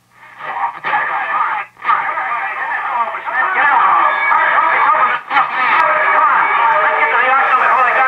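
A voice on an AM broadcast station coming through the speaker of a 1938 Silvertone 6125 tube radio tuned to 900 on the dial. The sound is thin and dull, with no treble, and grows louder after a few seconds.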